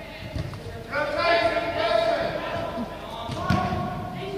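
Young footballers shouting and calling out during a game in an indoor hall, with the thud of a football being kicked about half a second in and again near the end.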